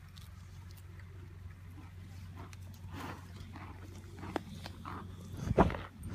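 A horse nosing at the microphone, with small rustles and clicks, then a loud puff of breath straight into the microphone near the end.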